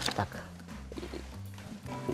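A few light knocks and handling sounds as two people sit down on a wooden bench holding acoustic guitars, over a faint low steady tone.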